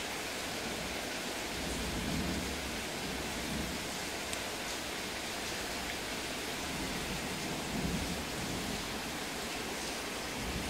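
Steady rushing hiss of aquarium water, with two low rumbles about two seconds in and around eight seconds.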